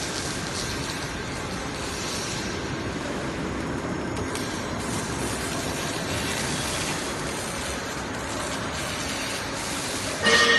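Roof panel roll forming machine running, steel sheet unwinding from the coil and passing through the forming rollers: a steady mechanical running noise with a faint thin whine over it.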